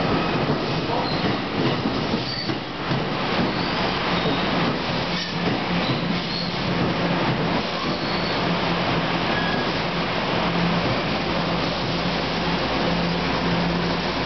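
NJ Transit Multilevel double-deck passenger coaches rolling past along the platform as the train pulls into the station: a steady rumble of wheels on rail with a low steady hum underneath and a few brief high squeaks.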